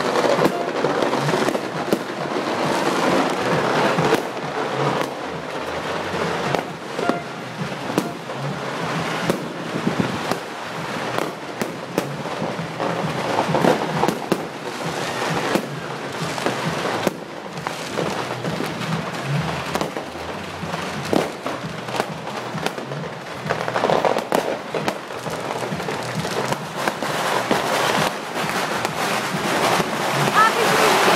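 Aerial fireworks going off: a dense, irregular run of bangs and crackles throughout.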